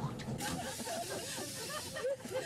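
A steady hiss sets in about half a second in and lasts over a second, over people chattering and giggling inside a metro car.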